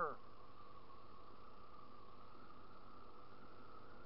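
Steady, muffled drone of a 2014 Yamaha Zuma 50F scooter's 49cc four-stroke single while riding, running on a nearly empty fuel tank.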